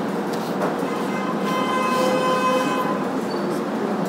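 A steady horn-like tone with several even overtones, starting about a second in and held for roughly two seconds before fading, over a constant background hiss.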